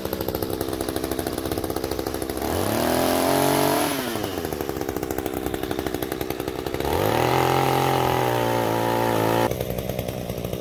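Small two-stroke gas chainsaw idling with a fast pulsing note, revved up twice, about two and a half seconds in and again about seven seconds in, each time rising in pitch, holding, then falling back to idle, while branches are cut from a tree.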